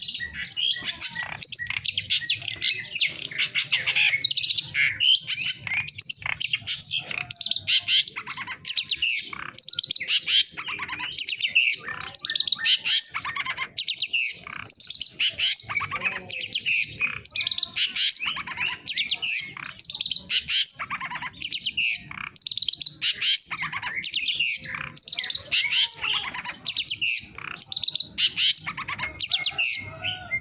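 A caged songbird singing continuously: rapid, varied high-pitched phrases, each about a second long, with short gaps between them.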